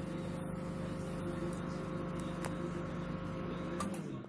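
LG MG-583MC microwave oven running on power with a newly fitted magnetron: a steady hum. Near the end the timer runs out, and the hum stops with a click.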